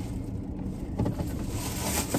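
Car engine idling, heard inside the cabin as a low steady rumble, with a brief handling knock about a second in.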